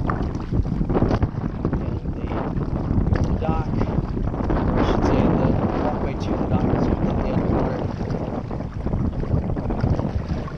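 Wind buffeting the kayak-mounted camera's microphone in a steady low rumble, with the irregular splashes and drips of a double-bladed kayak paddle dipping into the water on alternate sides.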